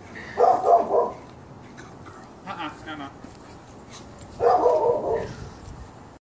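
A pet dog whining and yipping in three short bursts, excited at greeting its returning owner.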